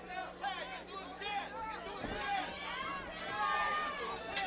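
Ringside crowd voices shouting and talking over one another during a live boxing bout.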